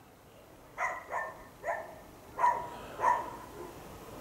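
A dog barking: five short barks spread over about two and a half seconds.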